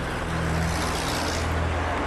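Recorded London street traffic, a vehicle passing with its road noise swelling to a peak around the middle. Under it a dark synth pad holds steady low notes.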